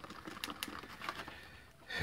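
Faint light clicks and scrapes of a small screwdriver tip working in a clear plastic tray, stirring two-part epoxy adhesive, a few sharper ticks about half a second in.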